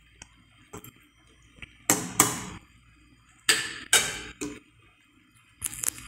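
A metal spoon scrapes and knocks against an aluminium pot of thick, simmering canjica in a few separate stirring strokes. Near the end come short clinks as it is set down on a ceramic plate.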